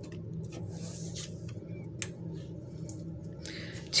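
Tarot cards being handled and laid down on a cloth spread: a few faint soft clicks and rustles, the clearest about two seconds in, over a steady low hum.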